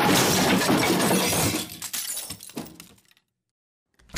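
A sudden loud crash of something shattering, lasting about a second and a half, followed by pieces clattering and settling until it dies away about three seconds in.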